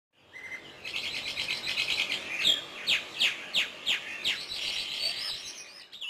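Songbird singing: a fast trill, then a run of sharp descending notes about three a second, then warbling.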